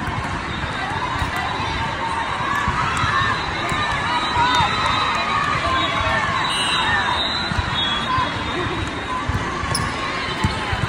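The din of a large multi-court volleyball hall: many voices talking and calling at once, with volleyballs being struck and bouncing on the courts and short squeaks from shoes on the court surface.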